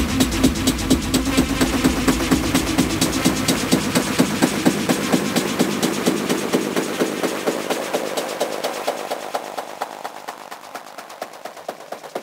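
Techno track from a DJ mix with a steady beat of about two hits a second. About halfway through the bass drops away and the music gets quieter, leaving a thinner, higher-pitched pulse.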